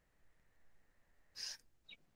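Near silence on a video-call line, broken about one and a half seconds in by one short, soft burst of hiss, like a quick breath drawn in at the microphone.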